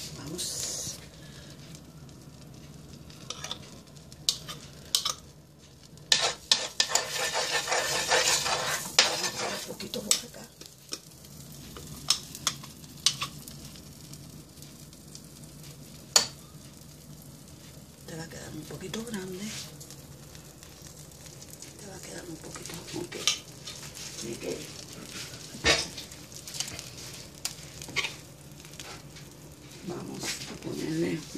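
Pancake batter and butter sizzling on a hot electric griddle as batter is spooned on, with a metal spoon clinking against the glass bowl and griddle. The sizzling is loudest about six to ten seconds in, and sharp spoon taps come at intervals through the rest.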